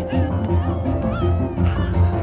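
Animated-film score playing, with about three short, high squeaky chirps over it, like a cartoon character's wordless squeak-voice.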